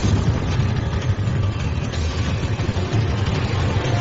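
Loud, steady rumbling sound effect with a hiss over it, with music mixed in, from an edited opening title sequence.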